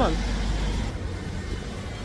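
Road traffic: a motor vehicle's low engine rumble passing by on the street, slowly fading.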